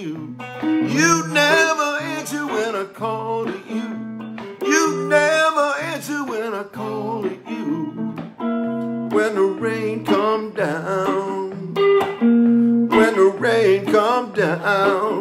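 Acoustic guitar played solo and fingerpicked, with a steady bass line of repeating low notes under a melody whose notes bend and waver.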